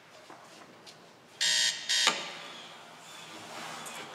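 Two short, loud electronic buzzing tones like an alarm, about a second and a half in and close together, the second trailing off. They come as the TV spot's audio starts playing in the room.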